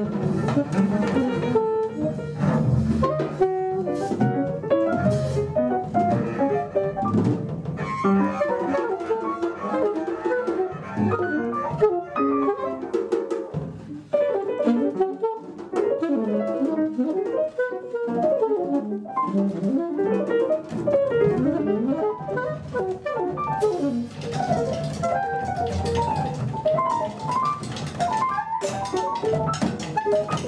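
Acoustic jazz quartet of piano, alto saxophone, double bass and drum kit playing live: busy drums and cymbals and double bass under fast runs of melody notes.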